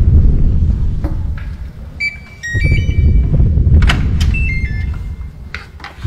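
Short runs of electronic beeps at changing pitches and a few sharp clicks, as of a door's electronic lock being worked and the door opening, over a steady low rumble.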